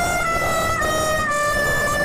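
A loud, horn-like sound effect edited in: one held note that steps down slightly in pitch twice.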